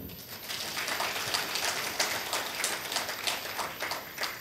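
Audience applauding: a dense patter of many hands clapping that rises just after the start and tapers off near the end.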